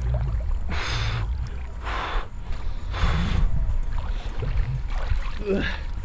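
A swimmer breathing hard, with three heavy breaths about a second apart, out of breath from swimming. A short vocal sound follows near the end.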